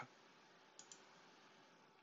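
Two faint computer mouse clicks in quick succession, a double-click, about a second in, over near silence.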